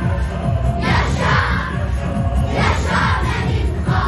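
A children's choir shouting together twice, as a crowd of young voices, over a recorded backing track with a steady low beat.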